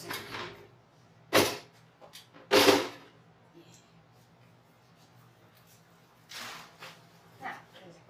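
Rustling handling noise from a deco mesh and ribbon wreath being picked up and carried: two loud rustles about a second apart, then two softer ones near the end.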